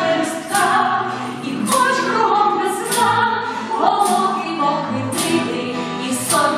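A small vocal group singing an old Ukrainian tango, several voices in harmony, women's voices among them, with the melody sliding between notes.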